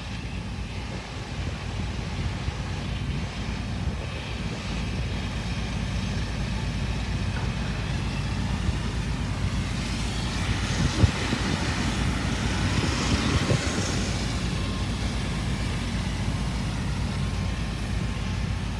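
Steady low vehicle rumble, a little louder in the second half, with a faint knock about eleven seconds in.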